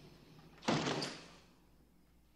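A door shutting about two-thirds of a second in, a sudden knock that dies away, with a sharper click of the latch just after.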